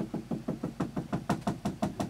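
Dry-erase marker tapping dots onto a whiteboard, a quick run of about seven taps a second, as a stippled sandstone layer is drawn.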